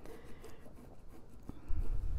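A marking pen drawing along the edge of an acrylic quilting ruler across fabric, a faint scratching. A low thump comes just before the end.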